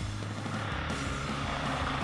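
Enduro dirt bike engine running and revving up about two-thirds of a second in, with background music mixed over it.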